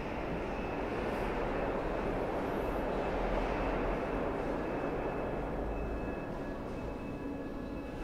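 Steady rushing ambient noise of a large stone hall's interior, with no distinct events, swelling slightly in the middle and easing off again.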